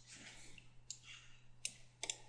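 Faint computer mouse clicks, two short sharp ones in the second half, over a low steady hum.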